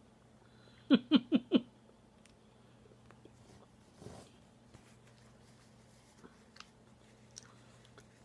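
A man laughs in four short bursts about a second in, then chews a mouthful of warm breaded cheese snack with faint clicks, with a breathy exhale about four seconds in.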